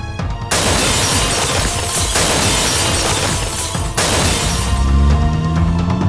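Film sound effect of a jeep crashing: a loud burst of crashing and shattering noise starts about half a second in, dips briefly, and cuts off suddenly near four seconds. Dramatic film music plays under it and carries on with rising low tones after the crash.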